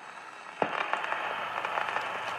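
Crackling noise that opens a pop song's intro, slowly growing louder, with a sharp click about half a second in, before the beat comes in.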